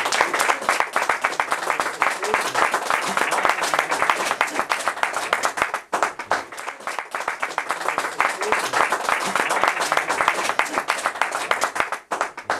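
Audience applauding just after a song ends: dense, steady clapping of many hands.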